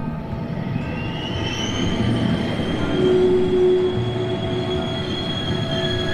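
Train running on the rails with a low rumble and a high-pitched metallic squeal from the wheels. The squeal rises about a second in and then holds steady.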